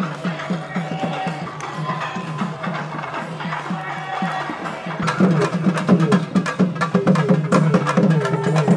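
Tamil procession music: a thavil barrel drum beats a quick, steady rhythm of about three strokes a second, with a nadaswaram reed pipe playing over it. The music grows louder and busier about five seconds in.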